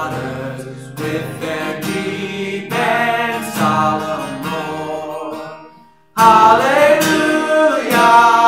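A man singing a hymn to his own strummed acoustic guitar. About six seconds in the sound drops away briefly, then the voice and guitar come back louder.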